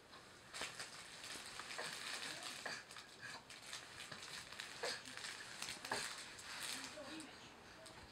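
Faint, scattered clicks and light rustling of an infant handling a plastic TV remote control on a fabric play mat, with a couple of soft baby vocal sounds near the end.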